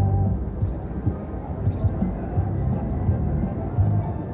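IGT Lucky Larry's Lobstermania 3 slot machine playing its game music and reel sounds during a spin, a run of short low notes over casino background noise.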